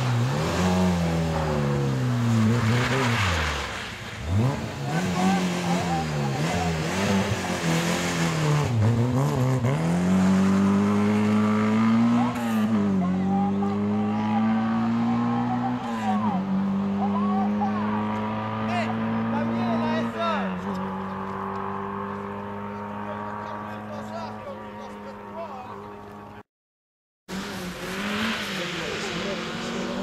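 A rally car's engine revving hard, its pitch swinging up and down for the first ten seconds, then climbing through the gears with a drop at each change as the car pulls away and fades into the distance. After a brief dropout near the end, a second rally car's engine is heard approaching.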